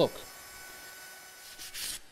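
Sandpaper rubbed by hand along oak stool rails, a short scratchy rub near the end, knocking the sharp edges off. Before it there is only a faint steady hiss with a low hum.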